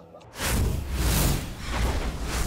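Broadcast graphics transition sound effect: a deep bass rumble with repeated whooshing swells, starting about half a second in.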